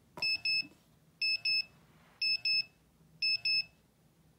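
NR-950 handheld radiation monitor (Geiger counter) sounding its alarm: a high electronic double beep repeated about once a second, four pairs in all. It is warning that the dose rate is still above its set alarm level after a radioactive source has been held against it.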